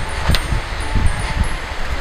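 Wind buffeting a clip-on microphone outdoors, a steady rough low rumble, with a few faint, short high tinkling tones at slightly different pitches in the first second and a half.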